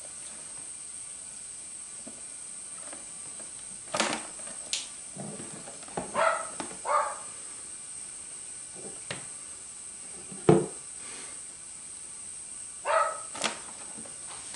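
Knocks, scrapes and rustles from a plastic rack tub and its bedding as a live rat is handled and scrabbles beside a ball python. A loud thump comes about ten and a half seconds in, and a few short, high squeaks come around six to seven seconds in and again near the end.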